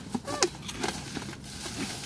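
A woman's short laugh about half a second in, then faint scattered clicks and rustles.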